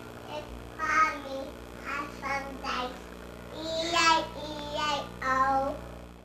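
A young child singing a string of short, unclear syllables, with a steady electrical hum underneath.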